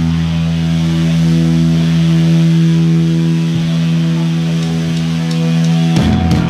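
Distorted electric guitars and bass, played loud through amplifiers, holding one sustained chord that rings out steadily with no drums. The drums come back in right at the end.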